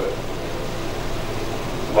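Steady room noise: an even hiss with a low hum, without speech.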